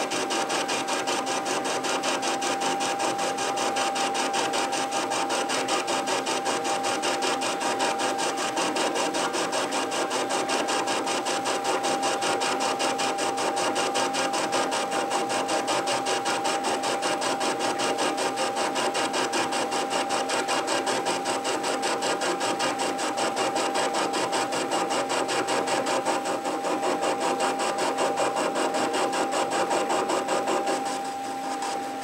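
Metal lathe running under load, its tool taking a rough turning cut along a cast-iron engine column: a steady high whine over a fast, even clatter.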